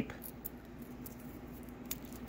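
Faint, small crackles and a few light clicks of clear plastic cover tape being peeled back from a carrier strip of tiny surface-mount connectors.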